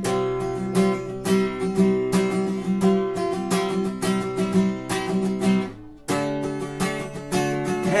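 Acoustic guitar strummed, moving between a C suspended fourth chord (Csus4) and C major. The strumming breaks off briefly about six seconds in, then picks up again.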